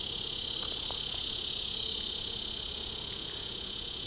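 A cicada singing: a loud, steady, high-pitched buzzing drone that starts suddenly just before and holds unbroken at an even level.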